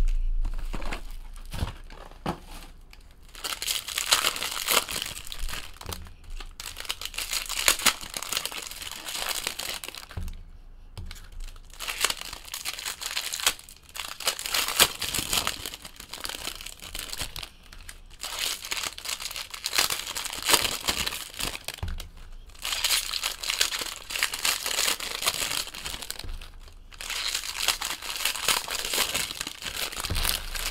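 Foil trading-card pack wrappers being torn open and crinkled by hand, pack after pack, in repeated bursts of crackling with short pauses between.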